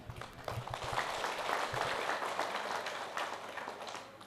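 A gathering applauding: many hands clapping together, starting just after the start and dying away near the end.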